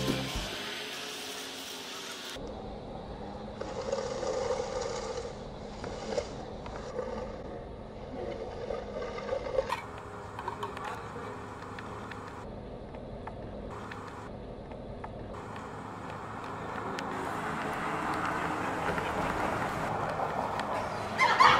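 Music cuts out in the first half second, then steady outdoor background noise with a low hum and a few faint knocks and scrapes; the background changes abruptly about two and ten seconds in.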